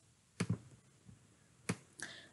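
Computer mouse clicks: a quick pair of clicks about half a second in, then a single click near the end.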